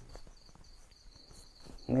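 A cricket chirping: one high note repeated in rapid, even pulses, about six a second, with a man's voice starting just at the end.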